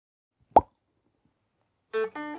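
A single short plop sound effect about half a second in, dropping quickly in pitch. Plucked-string background music starts near the end.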